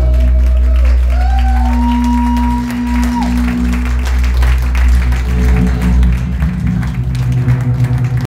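Live rock band playing out the end of a song: electric guitars, bass and drums ring on, with sliding guitar notes and one long held high guitar note, while the audience starts to clap.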